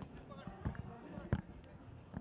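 Low murmur of voices in a hall, with three dull knocks about two-thirds of a second apart.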